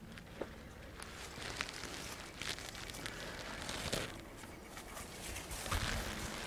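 Quiet outdoor background with faint shuffling and a few small scattered clicks as people handle the motorcycle and move about.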